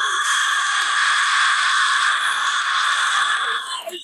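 One long, harsh, unpitched metal scream by a female vocalist, on an isolated vocal track, held for about four seconds and cut off sharply at the end.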